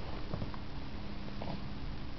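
Ragdoll cat purring steadily while being petted, a sign it is content, with a few faint brief sounds over it.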